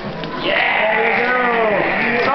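A drawn-out, wavering voice-like call that rises and then falls in pitch, starting about half a second in, over background talk.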